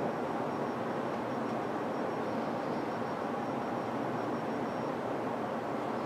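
Steady background hiss of room noise, with a faint thin high tone through most of it.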